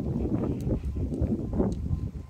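Wind buffeting the microphone, a low uneven rumble, with a few footsteps on concrete paving.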